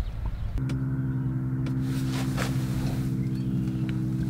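A steady low hum of several held tones starts abruptly about half a second in and holds unchanged, with a few faint clicks.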